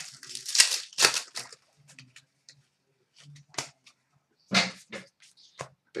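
Trading cards being handled and sorted by hand: a quick run of papery swishes as cards slide against each other early on, scattered light ticks as they are shuffled through, and another brisk swish about four and a half seconds in as cards are laid down on the glass counter.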